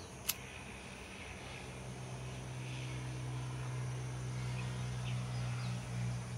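A pocket gas lighter clicked once as it is struck to heat shrink sleeving over a coaxial cable connector, followed by a steady low hum that slowly grows louder.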